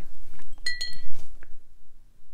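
A paintbrush clinking against a hard container, a few quick ringing taps about two-thirds of a second in.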